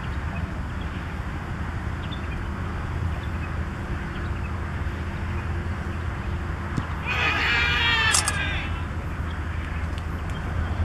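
A cricketer's long, wavering shout from about seven seconds in, just after a delivery is played, with a sharp click near its end. A faint knock comes just before the shout, and a steady low rumble runs underneath.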